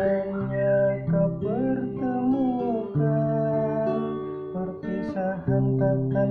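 Acoustic guitar strummed in chords that change about every two seconds, with a man singing along over it.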